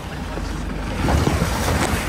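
Safari jeep driving through muddy puddles on a dirt track: its tyres splash and churn through the water over a low engine rumble, with wind on the microphone. The splashing grows louder about a second in.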